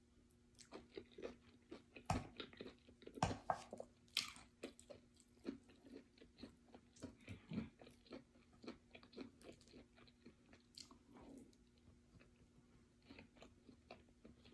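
Close-miked chewing and wet mouth sounds of eating fufu with ogbono soup: a run of soft, irregular smacks and clicks, with a few louder ones about two to four seconds in.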